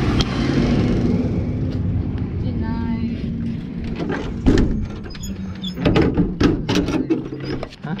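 Enclosed trailer's rear ramp door being pulled shut and latched: a series of sharp metal clanks and latch clicks in the second half, over a steady engine hum.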